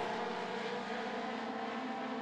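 Pack of four-cylinder dirt-track stock cars racing, their engines making a steady drone with several held tones.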